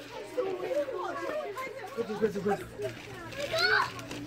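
Several people talking over one another, with a higher-pitched voice rising near the end.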